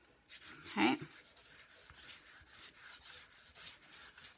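A hand smearing wet craft paint across cardboard in repeated back-and-forth strokes, with a faint rubbing scrape at each stroke.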